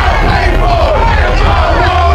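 Live hip-hop performance in a packed club: a loud, heavy bass beat with voices shouting over it, rappers and crowd together.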